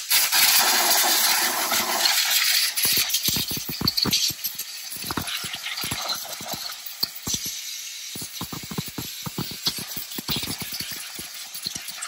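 Compressed-air blow gun hissing over a V6 engine's valve cover, blowing dirt and debris out from around the ignition coils. The hiss is strongest for the first two seconds, then weaker and broken by many small ticks and rattles.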